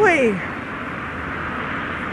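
A woman's voice trails off with a falling laugh, then a car approaching along a quiet country lane makes a steady, even road noise.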